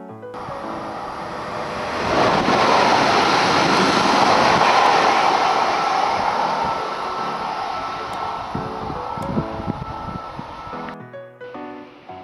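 Electric passenger train running on the line: a steady rushing rail noise that swells about two seconds in and slowly fades, with music playing over it. The rail noise cuts off about a second before the end, leaving the music alone.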